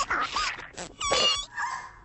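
Wordless creature noises from a claymation cartoon soundtrack: a few short gliding squeaks, then a louder wavering, warbling cry about a second in.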